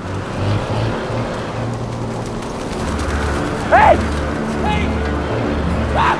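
Film soundtrack: a low, sustained music score under a steady hiss, with a single shouted cry about four seconds in.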